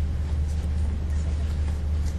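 A steady low hum with faint room noise over it, between speakers in a meeting hall.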